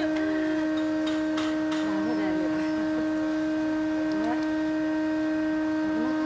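A steady, unwavering hum at one even pitch with several overtones, with faint distant voices underneath.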